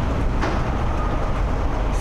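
Steady low rumble of background road traffic, with a single click about half a second in.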